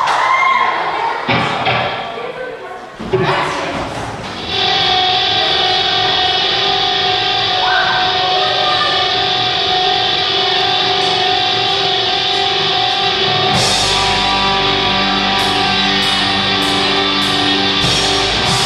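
Live rock band starting a song: after a few seconds of voice and stray stage thumps, a held electric guitar chord rings steadily, and about thirteen seconds in the bass and regular cymbal hits come in under it.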